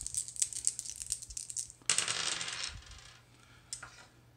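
Three dice shaken and rattling in a hand, then thrown onto a tabletop game board, clattering for under a second about halfway through before they settle.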